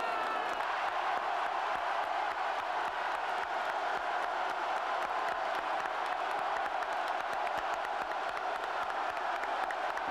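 A large crowd cheering and shouting steadily, with scattered clapping.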